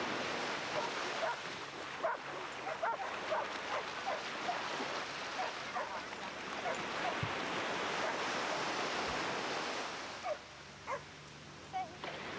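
Small waves washing steadily onto a sandy beach, with dogs barking now and then throughout. A few sharp barks stand out near the end as the surf quiets.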